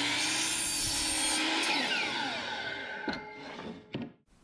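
DeWalt miter saw running and cutting through a wooden board, then the blade spinning down, its whine falling in pitch over the second half before the sound cuts off near the end.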